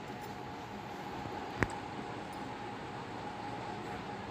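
Steady kitchen background hiss with a faint even hum, and one sharp click about a second and a half in, likely the steel ladle touching the pressure cooker.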